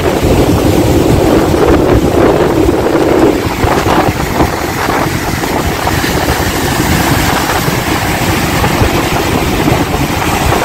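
Wind buffeting the microphone over the rushing, churning water of a ship's wake at sea.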